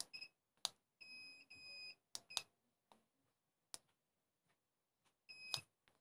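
Faint, high electronic beeps from a Xiaomi M365 electric scooter being power-cycled to reboot after a firmware flash. There is a short beep at the start, two longer beeps about a second in, and another beep near the end, with a few soft clicks in between.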